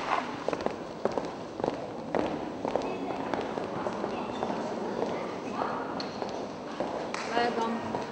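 Murmur of a crowd of children and adults, with scattered footsteps and sharp heel clicks on a wooden floor.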